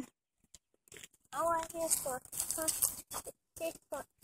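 Short, indistinct voice sounds after about a second of near silence: a person talking or babbling in brief bits.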